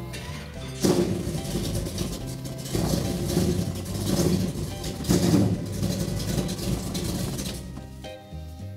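Hot-rodded Willys V8 firing up about a second in and being revved several times while cold, running unevenly. The owner calls it cold-blooded.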